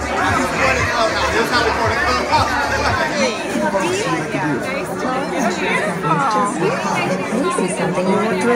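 Crowd chatter: many people talking at once, close by, with overlapping voices and no single clear speaker.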